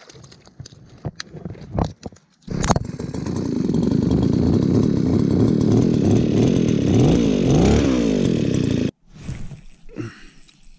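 A few knocks, then a gas-powered Viper ice auger's engine starts and runs loud at high revs as it bores through the ice, its pitch rising and falling with the throttle. It cuts off suddenly about nine seconds in.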